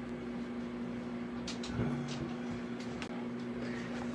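Faint steady electrical hum from the idling guitar amplifier rig, with a few faint ticks and a soft knock about two seconds in.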